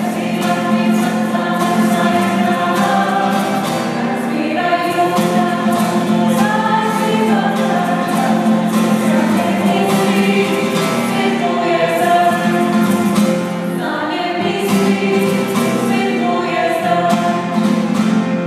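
A small vocal group singing a song in Slovenian with acoustic guitar accompaniment.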